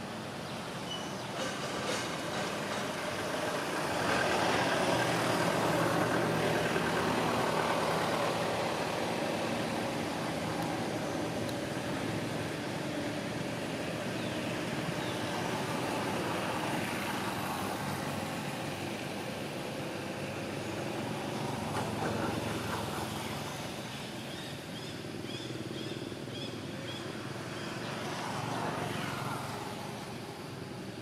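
Outdoor background noise, a low, even rumble that swells and fades several times and is loudest a few seconds in.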